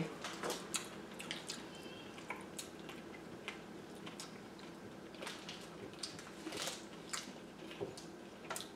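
Quiet chewing of chocolate with scattered small mouth clicks and smacks.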